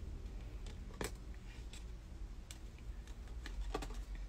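Hands handling a wig's paper tag and its string: a few faint sharp clicks and light rustles, one about a second in and a pair near the end, over a low steady hum.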